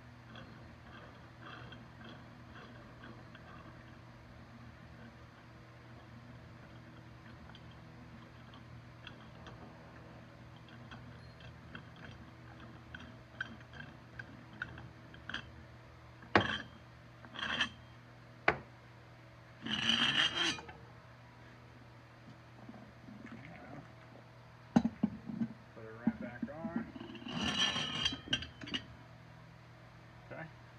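Handling sounds of a small tire and its metal wheel rim being worked onto the threaded rod of a mini tire changer: a few sharp clicks and knocks from about halfway, and two short scraping bursts later on, over a low steady background hum.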